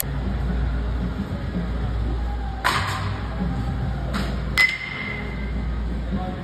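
Two sharp pings of a metal baseball bat hitting balls in a batting cage, about two seconds apart. The second is louder and rings briefly, over a steady low rumble.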